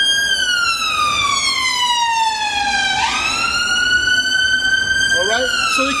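Emergency vehicle siren wailing loud: its pitch falls slowly, swoops back up about three seconds in, climbs for two seconds, then starts falling again near the end.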